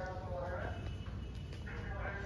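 Faint voices in the background over a low steady rumble, with no clear distinct event.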